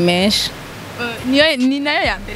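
A woman's voice speaking, broken by a short pause of steady hiss about half a second in.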